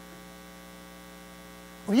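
Steady electrical mains hum, a set of unchanging tones with no rise or fall, in the sound system during a pause in speech. A man's voice begins right at the end.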